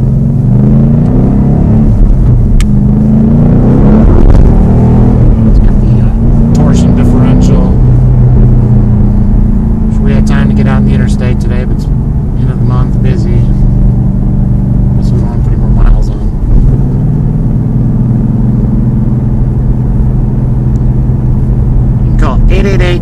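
The 2013 Ford Mustang Boss 302's 5.0 L V8, heard from inside the cabin while driving. The engine note rises several times as the car accelerates, then runs steadier at a light cruise.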